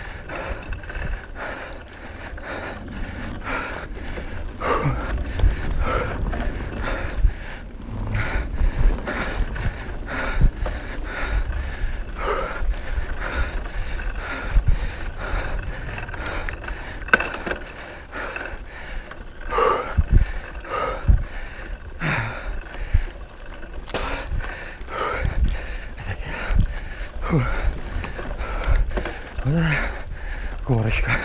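Mountain bike ridden fast over a bumpy dirt forest trail: frequent knocks and rattles from the bike, with tyre noise and wind rumble on the camera's microphone.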